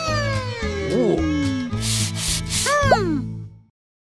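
Cartoon sound effects over a bouncy music bed: a long falling glide in pitch, a quick criss-crossing squiggle, four short rasping shakes, then a pair of springy up-and-down glides. The music and effects cut off suddenly shortly before the end.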